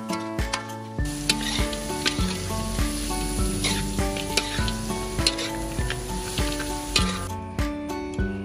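Chicken and green herbs sizzling in a steel wok while a metal spatula stirs them, clicking and scraping against the pan, over background music. The frying starts about a second in and stops shortly before the end, leaving only the music.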